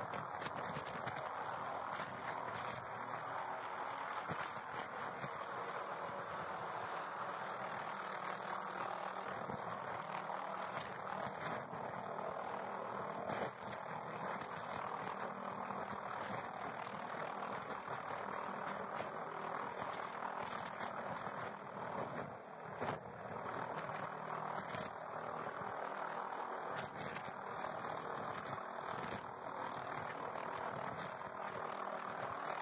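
Police helicopter hovering, its rotor and turbine making a steady drone, with a single knock about thirteen seconds in.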